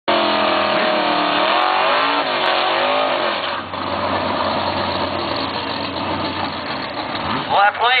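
Drag car's engine revving up and down in a burnout, the rear tyres spinning and smoking. The engine then holds steady at high revs under a rushing tyre noise for about four seconds. A PA announcer's voice comes in near the end.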